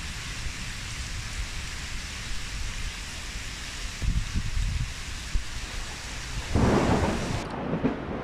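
Heavy rain pouring onto a river's surface, a steady hiss, with low rolls of thunder; the loudest rumble comes about six and a half seconds in. The rain hiss cuts off abruptly just before the end.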